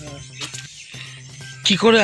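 Mostly speech: a man pauses talking, leaving a faint steady hum with a few small clicks. The audio drops out briefly just under a second in, and a loud voice resumes near the end.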